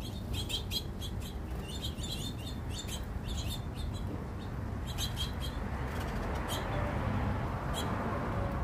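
Small birds at a seed feeder chirping: a quick run of short, high chirps through the first three seconds, then a few scattered chirps later. Under them runs a steady low background rumble that grows louder near the end.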